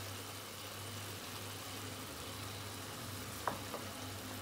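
A potato and cauliflower curry sizzling gently in oil in a frying pan on a gas hob while a wooden spoon stirs it. Two light knocks of the spoon against the pan come near the end.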